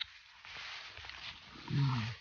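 Rustling and handling noise as the phone is moved among the leaves, opening with a sharp click. Near the end comes a short, low hummed "mm" from a person, the loudest sound here.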